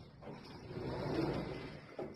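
Schindler elevator doors sliding open: a low, noisy slide that builds over about a second and fades near the end.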